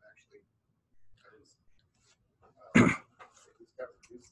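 Faint, distant speech in a small room, with one short, loud burst of a person's voice a little under three seconds in.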